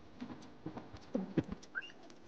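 A person eating: wet chewing and lip-smacking clicks mixed with a few short hummed "mm" sounds, and a brief rising squeak near the end.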